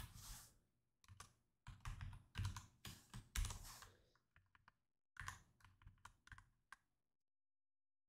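Typing on a computer keyboard: a faint, irregular run of keystrokes that stops about seven seconds in.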